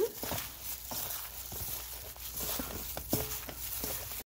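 A hand in a plastic glove tossing raw beef cubes in flour in a metal bowl: soft, irregular rustling and crinkling of the glove, with light pats and taps.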